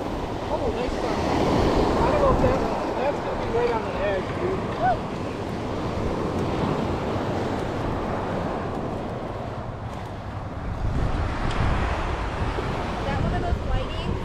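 Surf washing onto the beach in a steady rush, with wind buffeting the microphone.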